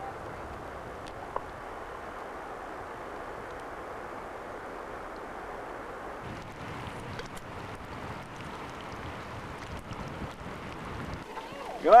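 Steady, even outdoor noise of wind on the microphone while filming from a boat on the water, with no distinct events; a voice begins at the very end.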